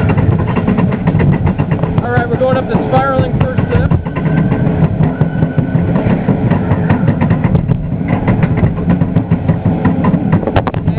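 Small roller coaster train running along its track, a steady rumble under dense, fast rattling and clattering. A brief wavering tone rises over it about two to three seconds in.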